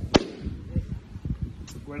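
A baseball smacking into a leather catcher's mitt: one sharp pop a fraction of a second in, followed by a few soft low thumps.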